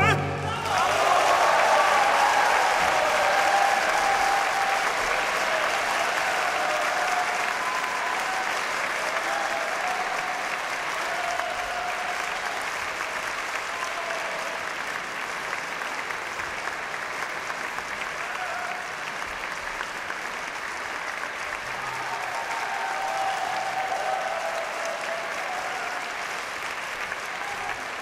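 Concert-hall audience applauding at the end of an opera aria. The clapping is dense and steady, eases a little, then swells again about three-quarters of the way through.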